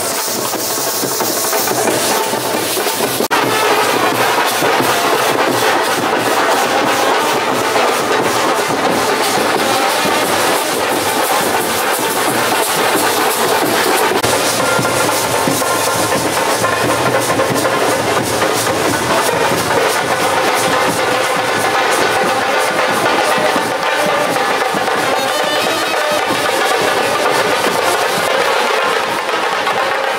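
Indian procession brass band playing: brass horns over fast, dense drumming.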